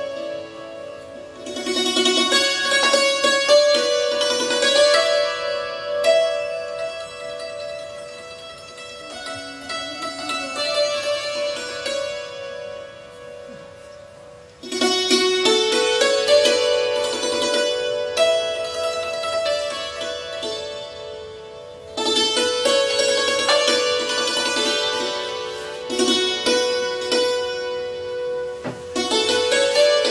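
Afghan instrumental melody on a santur (hammered dulcimer) with a long-necked plucked lute: many ringing, bright string notes. The music enters loudly at about 1.5, 15 and 22 seconds and fades between those entries.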